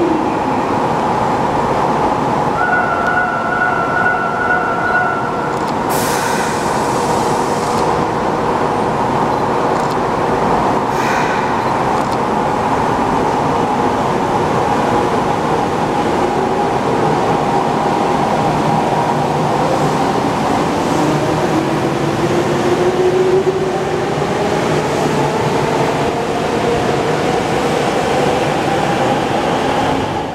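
Nagoya Municipal Subway 3000-series train departing an underground platform. A steady tone sounds for a few seconds near the start, and a sharp burst with a short hiss of air follows about six seconds in. The train then pulls away, its motor whine rising in pitch as it speeds up.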